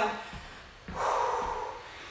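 A woman's heavy breath out about a second in, a single breathy rush: winded at the end of an exercise interval.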